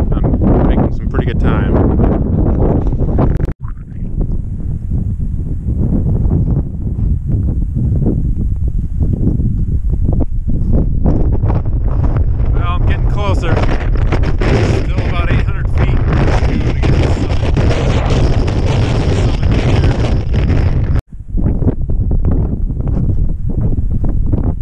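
Strong wind buffeting the microphone, a loud continuous rumble that breaks off abruptly twice, about three and a half seconds in and again about three seconds before the end.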